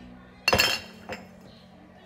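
A hard tea container is set down with one ringing clink about half a second in, followed by a lighter click.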